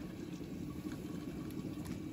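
Pot of rice boiling in water, bubbling steadily, with a few faint light clicks.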